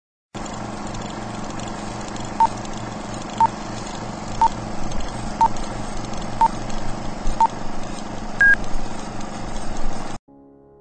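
Old film-leader countdown sound effect: a steady crackly projector hum with a short beep each second, six in a row, then one higher, slightly longer beep near the end.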